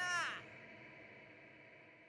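A voice holding a drawn-out syllable that glides down in pitch and stops about half a second in. It is followed by a faint steady tone that fades away.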